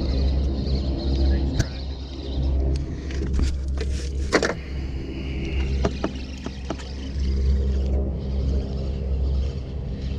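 Suzuki 150 four-stroke outboard idling: a steady low rumble, with a few short clicks and knocks scattered through it.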